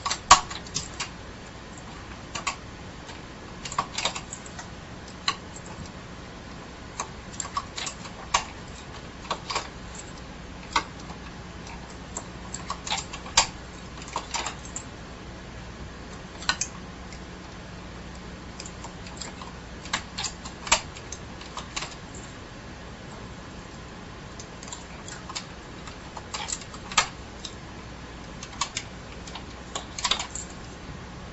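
Irregular light clicks of metal needles and a latch tool on a Bond knitting machine's needle bed, as stitches are dropped down and latched back up by hand, over a steady faint hum.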